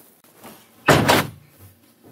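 Hotel room door shutting: a short double knock of the door and its latch about a second in.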